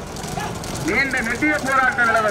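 Men's raised voices shouting in short calls, starting about half a second in.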